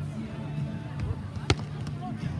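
A single sharp slap of a hand striking a volleyball about one and a half seconds in, over faint background voices.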